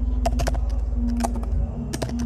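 Keys of a computer keyboard being typed, a string of short, irregular clicks over a steady low background hum.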